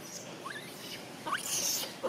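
Two short rising squeaks from a young macaque, under a second apart, followed by a brief high hiss near the end.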